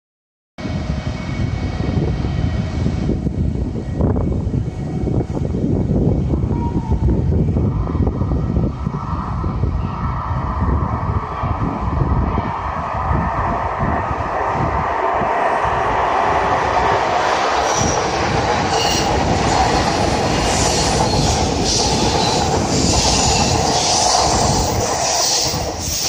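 JR Kyushu 783 series electric express train approaching and running through a station without stopping. Its noise builds from about a third of the way in, and a rapid run of wheel clicks over the rail joints comes in the last several seconds as the cars pass.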